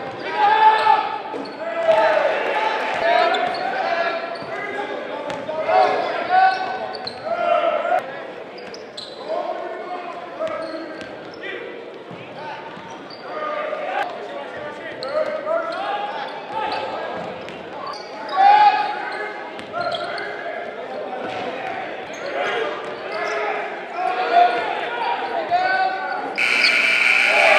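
Basketball game in a reverberant gymnasium: players and spectators calling and shouting, with a basketball bouncing on the hardwood floor.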